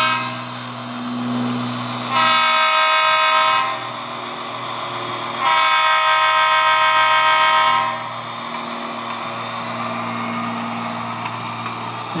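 HO scale model diesel locomotive's onboard sound sounding its horn: a shorter blast and then a longer one, each a steady chord, over the steady low hum of its diesel engine sound.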